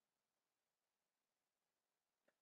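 Near silence: the sound track drops to digital silence between stretches of narration.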